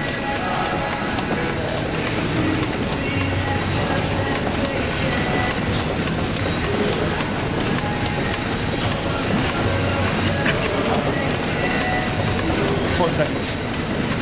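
Elliptical trainer worked at a fast pace: a steady rhythmic clatter from the machine, about three clicks a second, heard close up.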